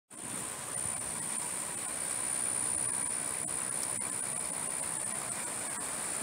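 Steady outdoor background noise with a constant high-pitched insect trill over it.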